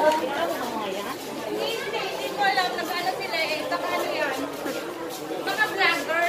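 Several people chattering, their overlapping voices indistinct in a large hall.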